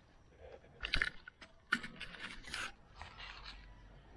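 A few short, scattered scrapes and knocks from a bike being parked and moved away from on foot.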